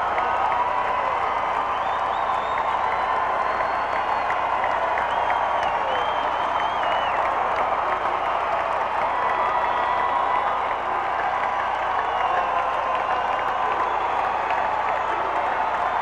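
Arena crowd cheering and applauding steadily, with scattered claps and high whoops and whistles over a roar of voices.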